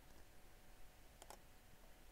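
Near silence: room tone, with two faint computer mouse clicks in quick succession a little past halfway.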